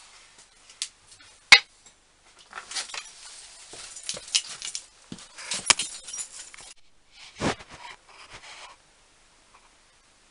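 Handling noises in a workshop. About one and a half seconds in there is a sharp knock as a coffee mug is set down on the workbench. Then come several seconds of scraping, rustling and light knocks as things are moved about, with a dull thump about seven and a half seconds in.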